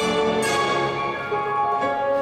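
Orchestral classical music with held notes moving in a melody, the skater's program music.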